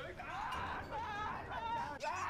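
A high-pitched, wavering human voice crying out, like a frightened yelp or scream.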